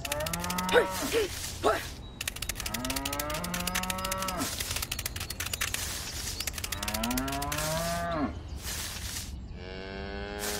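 Cattle mooing: a series of long, drawn-out calls, three in turn and a fourth starting near the end, over a rapid fine clicking that stops a little before the last call.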